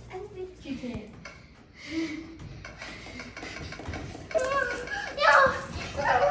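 Children's voices talking and calling out, louder near the end; no other clear sound stands out.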